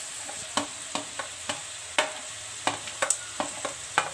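A metal spoon scraping chopped vegetables off a plate into a hot pan, clicking and knocking against the plate about ten times at uneven intervals. Under it, a faint steady sizzle from the butter heating in the pan.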